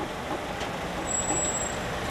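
Town-centre road traffic: a steady hum of cars passing at a junction. A thin, high-pitched whine sounds for just under a second about a second in.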